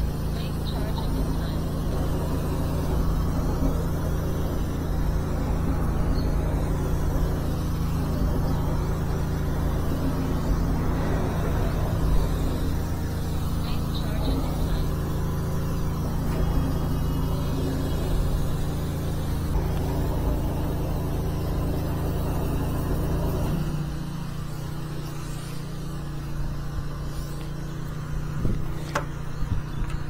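High-pressure sewer jetter's engine and pump running steadily with a deep drone, which drops lower and quieter about three-quarters of the way through.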